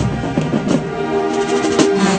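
Marching band playing, with the sousaphones close by and loudest: held brass notes over drums.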